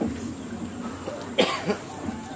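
A person coughing: two quick coughs about one and a half seconds in, the first the sharper and louder.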